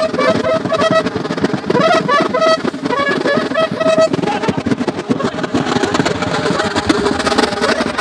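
A uniformed brass band of horns and drums plays a tune. There are short repeated notes over the first few seconds, and the playing turns denser after that.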